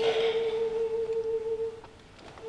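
Soprano and cello in a classical piece: one soft, steady high note held for nearly two seconds, fading out near the end.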